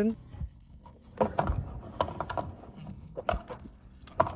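Plastic fuel filler cap handled and brought to the filler neck of an Audi: several short clicks and knocks of plastic, spread over the last three seconds.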